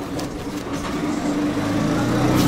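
A motor vehicle's engine running with a low steady drone, getting louder over the second half as it comes closer.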